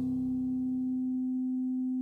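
A steady, unchanging pure tone of a meditation 'frequency' track held throughout, as the last notes of soft ambient music fade away beneath it.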